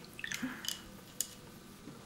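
Paintbrush dipped into a glass jar of green liquid: a light wet swish and a few small clicks of the brush against the jar, the clicks in the first second and one more a little after.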